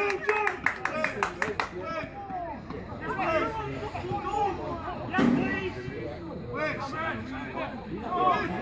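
A spectator clapping, a quick run of about five claps a second for the first second and a half, then several men's voices talking and calling over one another.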